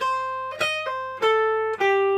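Trent Model One electric guitar through a Vox AC30 amp, playing a major-pentatonic lead lick in single picked notes: about five notes stepping mostly downward, the last one held.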